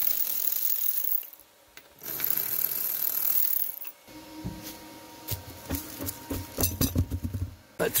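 Cordless ratcheting wrench (Milwaukee M12) spinning off 17 mm lug nuts on a car wheel. Its motor whines in two runs of about a second and a half each, with a short pause between. Softer clicks and rattles follow as the loosened nuts and socket are handled.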